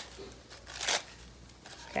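A brief papery rustle of tissue paper being handled, a little under a second in.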